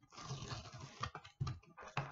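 Sticky paper being peeled off a cardboard box: irregular rustling and crackling with a few small clicks.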